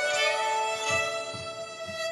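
Two fiddles playing an old-time tune together in duet, the sound thinning and getting quieter as it settles onto a long held final note.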